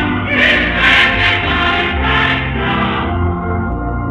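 Church choir singing a gospel hymn with accompaniment, heard from an old radio-broadcast tape. The voices stop about three seconds in, leaving held accompaniment chords.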